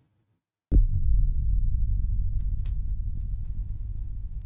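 Explosion sound effect: a sudden boom about a second in, then a long low rumble that slowly fades, with a thin steady high whine over it.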